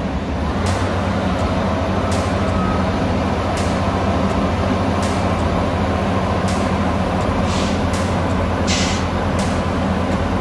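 Diesel engine of a Komatsu PC650 tracked material handler running steadily while its clamshell grab waits over the hopper, with occasional faint clicks and a short hiss about nine seconds in.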